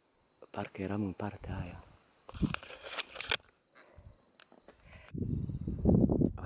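A man's voice sounds briefly, with a thin, steady high-pitched whine underneath throughout. A few scattered rustles follow, and about five seconds in, a louder rough rustling noise sets in on the microphone.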